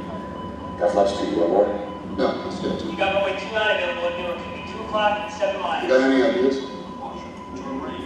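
Film dialogue: men's voices of airline pilots talking in a cockpit, from a movie soundtrack played over a hall's loudspeakers, with music underneath.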